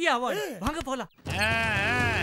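A high, drawn-out cry that rises and then falls, heard over the steady low running of a motorized cargo tricycle's small engine, which starts with a cut about a second in.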